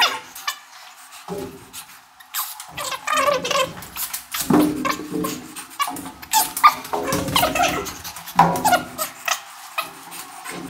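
Fast-forwarded, sped-up audio: quick, high-pitched chipmunk-like chatter with scattered short clicks, thin and missing its low end in stretches.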